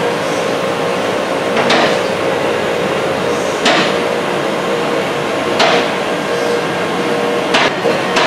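Two-post vehicle lift raising a pickup: the hydraulic pump motor hums steadily, and the lift's safety locks clack four times, about every two seconds, as the carriages climb past each lock stop.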